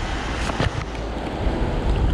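Steady noise of road traffic on the bridge overhead mixed with the rush of the creek's water, with a couple of sharp splashes or knocks about half a second in.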